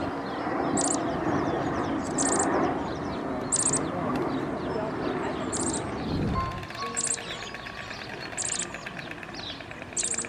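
A small bird chirping, one short high chirp about once a second, over indistinct background voices that fade out after about six and a half seconds.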